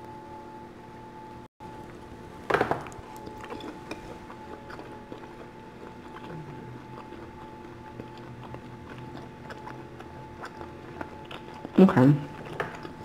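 Close chewing of a crispy fried-dough rice noodle roll, with a louder bite or mouth sound about two and a half seconds in and again at the very end. Underneath runs a steady background of a television showing a football game.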